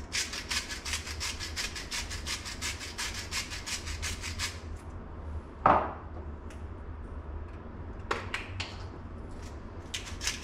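Hand-twisted salt and pepper grinders cracking seasoning in a rapid run of clicks for about four and a half seconds, then one louder knock about halfway through, a few scattered clicks, and a fresh run of grinding starting right at the end.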